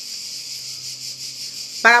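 A steady high-pitched hiss with a faint low hum beneath it, unchanging through a pause in speech.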